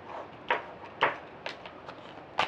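Tarot cards being handled and laid down: four short, sharp snaps about half a second apart.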